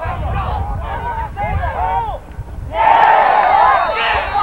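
Many voices yelling and cheering, swelling much louder near the end, with wind rumbling on the microphone.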